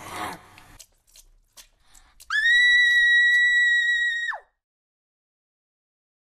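Blood splurting sound effect at the start, then a high-pitched shriek held at one steady pitch for about two seconds, which drops sharply in pitch as it cuts off.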